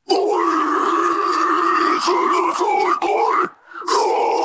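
Isolated deathcore harsh vocal: a raspy, unpitched scream comes in sharply and is held for about three seconds. After a short breath gap, the next scream starts just before the end.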